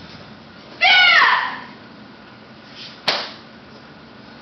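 A woman's loud, short kiai shout about a second in, its pitch rising then falling, followed near the three-second mark by a single sharp slap, as she performs a Kenpo karate form.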